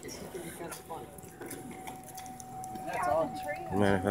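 Indistinct voices of people talking. A thin, steady tone starts about halfway through, and a louder voice with wavering pitch comes about three seconds in and again near the end.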